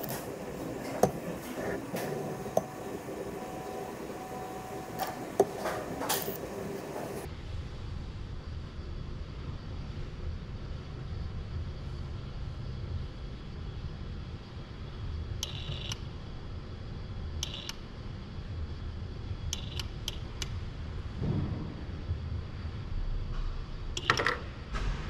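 Industrial robot arm working at a bolt rack: for about seven seconds a busy run of quick ticks and clicks, then a low steady machine hum with a few brief, sharp metallic clinks near the middle.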